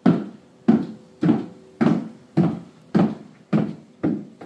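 Footsteps of 7-inch platform high heels on a polished hardwood floor, at an even walking pace. Seven firm steps, about one every 0.6 seconds.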